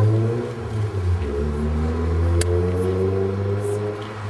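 A motor vehicle's engine running close by, its low hum drifting slowly up and down in pitch, with a single sharp click a little past halfway.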